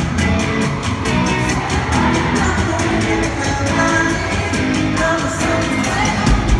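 Live pop-rock band playing through an arena sound system: a male lead vocal sung over a steady drum beat and amplified guitars.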